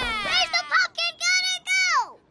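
A very high-pitched cartoon character's voice making a run of short wordless syllables. It opens with a long falling glide and ends on another falling glide.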